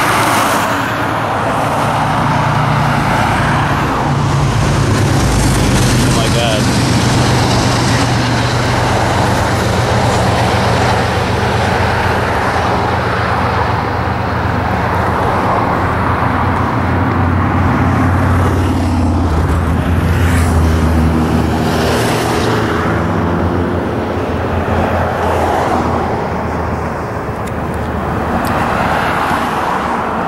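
Road traffic passing close by on a bridge roadway: a steady wash of car engine and tyre noise that swells and eases as vehicles go past.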